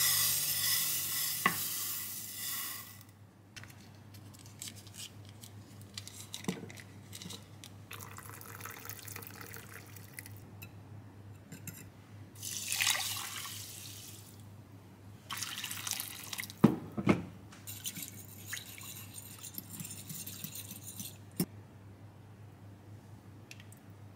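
Dry rice pouring into a glass baking dish with a grainy hiss for the first few seconds. About halfway through, broth is poured over the rice. Chicken legs are then set into the liquid with splashing and a couple of sharp knocks against the glass dish.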